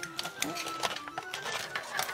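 Aluminium foil crinkling and crackling in irregular clicks as it is folded by hand into small boat shapes, over background music.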